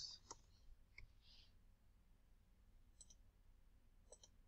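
Near silence, broken by a few faint, scattered computer clicks.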